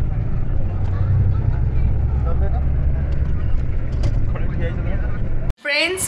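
Bus engine and road rumble heard inside the passenger cabin, a steady low drone with faint voices in it, cutting off suddenly near the end.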